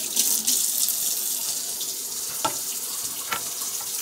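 A steady, water-like hiss, with two light clicks, likely a spoon touching the pot, about two and a half and three and a half seconds in.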